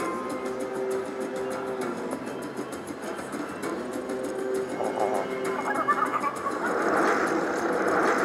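Raging Rhino Rampage slot machine playing its free-spin bonus music, steady sustained tones throughout. About five seconds in, chiming effects come in and build as the reels stop and wild multiplier symbols land, loudest near the end.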